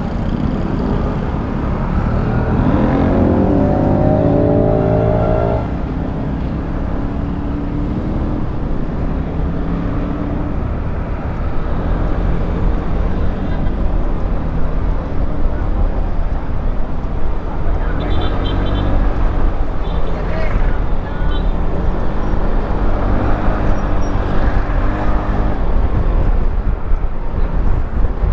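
FKM Slick 400 maxi scooter's engine running under way, rising in pitch as it accelerates a few seconds in. From about a third of the way through, a louder low rumble of wind on the microphone joins it as the speed builds.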